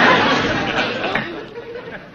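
Studio audience laughing, the laughter dying away over the first second and a half.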